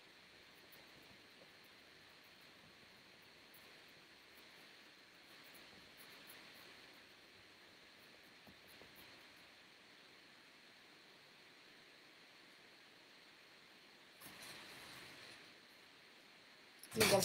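Near silence: faint hiss with a steady thin high tone, and a few faint soft scuffs of a paintbrush dabbing acrylic paint on canvas, a little louder near the end.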